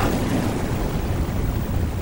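Rumbling, explosion-like sound effect at the end of a TV show's opening titles: a steady, tuneless noisy rumble that follows the theme music's last hit.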